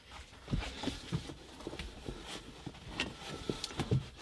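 Faint, scattered small clicks and knocks over low background noise.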